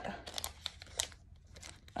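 Pokémon booster pack's foil wrapper crinkling in the hands, with a few sharp crackles as the cards are drawn out of the opened pack.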